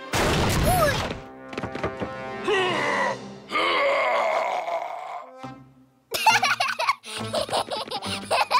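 Cartoon soundtrack: music with a heavy thump at the start and a cartoon bear's groaning and grunting. It breaks off into a brief silence just before six seconds in, then the music comes back loudly.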